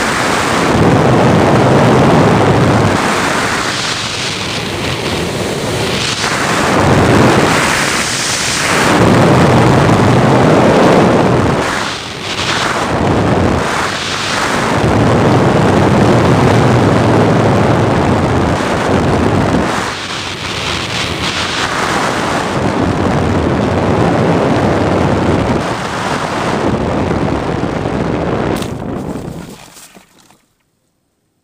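Wind rushing over the onboard camera of an RC sailplane (Topmodel Discus 2C, 4.5 m span) in gliding flight: loud, steady wind noise that swells and fades every few seconds. Near the end it drops away suddenly as the glider comes down in the grass.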